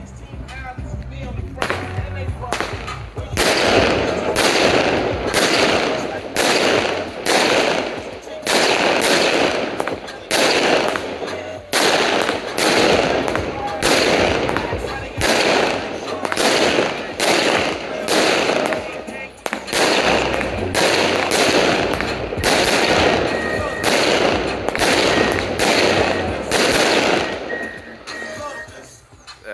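A consumer firework cake firing its shots in a steady run of loud bursts, roughly one a second, starting a few seconds in.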